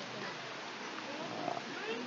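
Steady faint background noise with a few faint, short rising and falling calls of a small animal.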